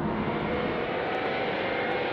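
Jet aircraft engines running steadily, a continuous roar with a faint high whine.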